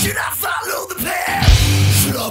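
Heavy metal song with a yelled vocal over a sparse break in the band. The full band with bass and drums crashes back in about one and a half seconds in.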